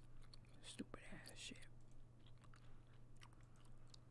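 Near silence: a low steady hum with a few faint clicks about a second in, typical of a computer mouse being clicked.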